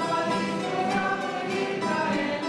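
A group singing a church hymn to acoustic guitar accompaniment, in held notes that change pitch every half second or so.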